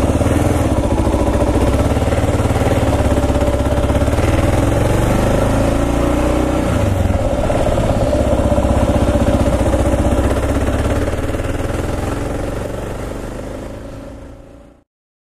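Kawasaki KLR 650's single-cylinder four-stroke engine running under way on a dirt road, its pitch rising and falling around the middle as the speed changes. The sound fades out near the end.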